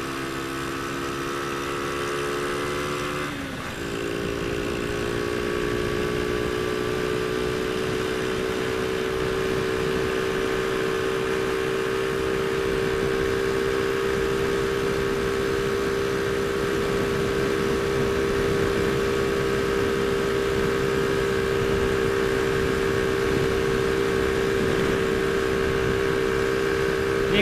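Honda Astrea Grand's small single-cylinder four-stroke engine running at full throttle while riding, with wind rushing past. Its note dips briefly about three seconds in, then holds steady for the rest, the bike running flat out near its top speed.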